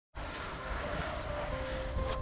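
Steady rumbling outdoor noise, like wind or distant traffic, starting suddenly. Faint music notes come in near the end.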